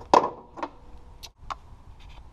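Two short, sharp clicks about a quarter second apart, from a ratchet and spark plug socket being worked into a spark plug well.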